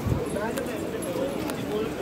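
Background voices of passers-by talking in a busy market street, with a low thump at the start and a few sharp clicks at irregular spacing.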